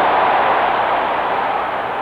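Large stadium crowd cheering a goal: a steady, dense wash of crowd noise that eases off slightly near the end.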